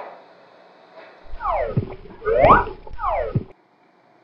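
A comic sliding-pitch sound effect over a low hum: three long glides, falling, then rising, then falling again, cut off abruptly shortly before the end.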